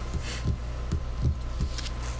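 Soft low thumps, about five in two seconds, with a faint rustle, from hands and papers moving on a desk close to a microphone. Under them runs a steady low electrical hum.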